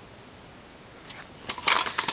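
Quiet room at first, then near the end a short burst of rustling and handling of a plastic DVD case.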